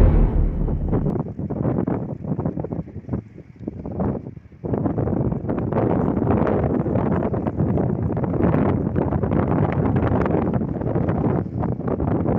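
Wind buffeting the microphone outdoors, a rough, gusty rumble. It drops to a lull about three to four and a half seconds in, then picks up again and holds steady. In the first second the last loud note of music dies away.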